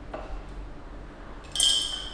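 Glass teapot lid clinking against the glass pot as it is lifted off: one bright, ringing chink about one and a half seconds in, after a faint knock near the start.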